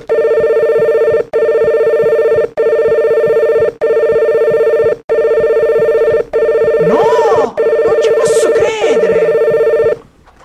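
Mobile phone ringing loudly: a steady warbling ring tone broken by short gaps about every second and a quarter.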